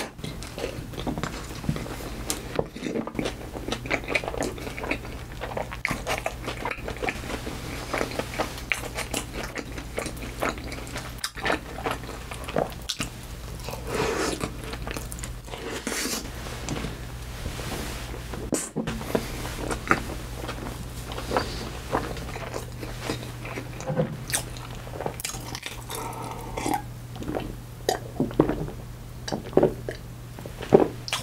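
Close-miked chewing of a soft burger covered in cheese sauce: wet mouth smacks and many small sharp clicks, with no let-up.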